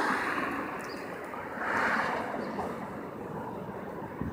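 Rushing wind and road noise through an open car window, swelling briefly near the middle.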